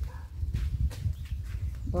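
Low rumble of wind and handling on a handheld phone microphone while walking, with faint footsteps and scattered clicks.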